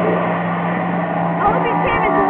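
Mixed voices, with a steady low hum underneath that stops shortly before the end; a few higher voices rise in the second half.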